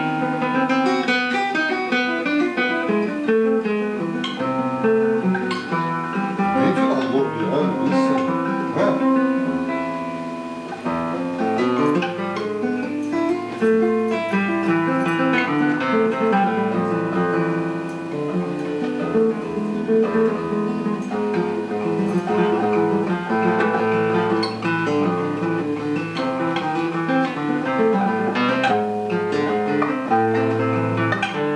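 Solo seven-string classical guitar made by luthier J M Santos, fingerpicked: a continuous melody over bass notes and chords, with a brief softer passage about ten seconds in.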